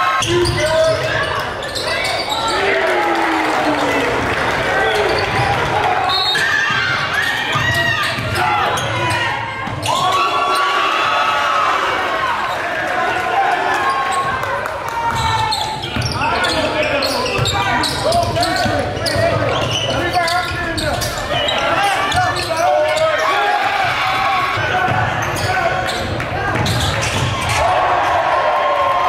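Live basketball game sound in a school gymnasium: a ball dribbling and bouncing on the hardwood court, with players and spectators calling out and talking throughout, all echoing in the hall.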